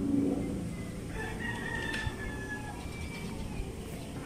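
A single drawn-out bird call, beginning about a second in and lasting about a second, sloping slightly down in pitch, over steady low outdoor background noise.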